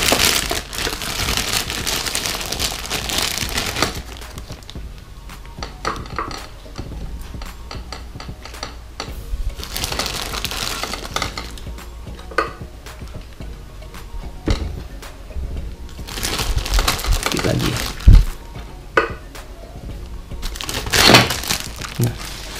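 A plastic bag of dark aquarium base substrate crinkles and rustles for the first few seconds. Then a small plastic scoop digs the soil out and tips it into a small glass tank, with short scrapes, pours and a sharp knock about eighteen seconds in.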